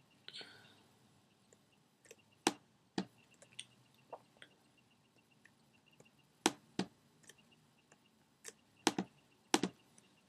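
Scattered sharp computer mouse and keyboard clicks, about a dozen with pauses between them, some coming in close pairs, as a clone stamp tool is Alt-clicked and dabbed. A short breath is heard about half a second in.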